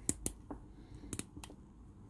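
Handling of a Castello briar pipe: several faint, irregular clicks and taps as the acrylic stem is worked into the shank.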